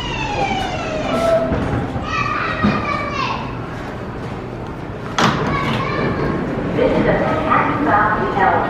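R160 subway train's motor whine falling in pitch and fading as the train comes to a stop, over platform noise with voices. A single sharp thump about five seconds in.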